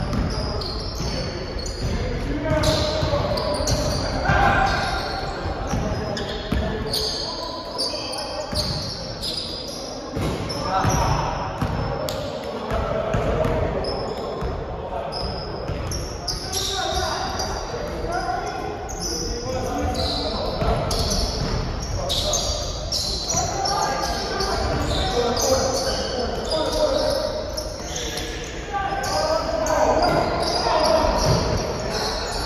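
Pickup basketball on a hardwood gym floor: a basketball bouncing repeatedly as it is dribbled, sneakers squeaking, and players calling out, all echoing in a large gym.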